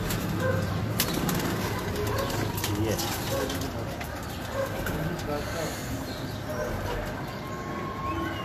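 Domestic pigeons cooing in an aviary, over a low murmur of voices.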